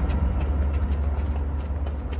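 A steady, loud low rumble with a faint haze above it and a few faint scattered ticks.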